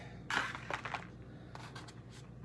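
Rustling and light scraping from handling a cheesecloth-draped wire spider web and a string-tied paper hang tag, with the loudest rustle about a third of a second in and a few fainter scrapes after.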